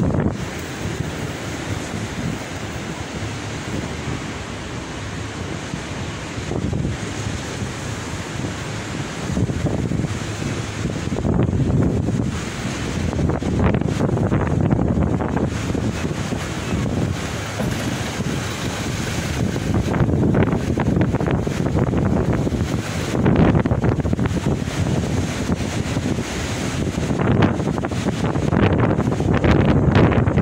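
Wind gusting over the microphone in uneven surges, over the wash of sea waves breaking along the sea wall.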